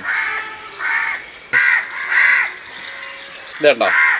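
A crow cawing: four short, harsh caws in quick succession.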